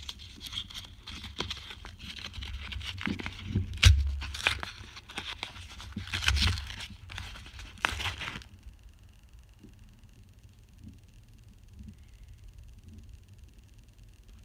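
Paper wrapper being torn and crinkled open around a bar of handmade soap, in irregular rustles and sharp crackles, loudest about four and six seconds in, stopping about eight seconds in.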